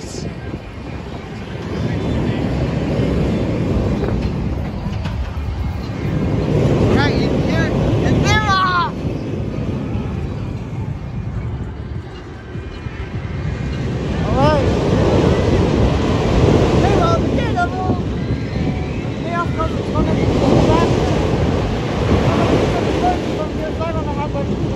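A B&M floorless steel roller coaster train running through its elements with a loud rolling roar that swells and fades, eases off about halfway through, then builds again. Riders scream at several points, in short high rising-and-falling cries.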